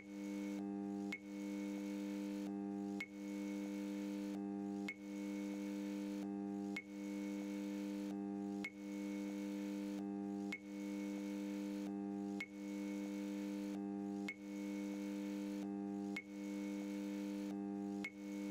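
Quiet outro music: a sustained synthesizer chord that dips briefly and restarts with a soft click about every two seconds, like a short loop repeating.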